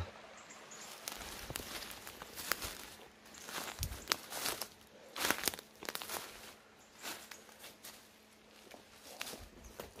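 Footsteps on dry fallen leaves and twigs on a forest floor: an uneven series of rustling steps that grows quieter near the end.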